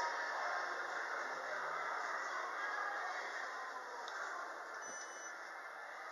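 Schindler elevator car arriving at the landing: a steady running noise that slowly fades as the car slows, then a click and a low thump near the end as it stops and the doors start to open, with a brief faint high beep.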